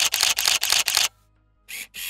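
Camera shutter sound effect firing a rapid burst of clicks, about eight a second, that stops about a second in. After a short silence, two more shutter sounds come near the end.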